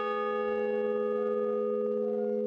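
A large hanging bell ringing on after a single strike, with several steady tones that fade only slowly.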